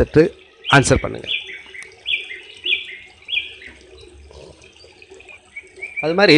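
A small bird chirping in the background: four short, high, slightly falling calls in quick succession, then a few fainter calls near the end.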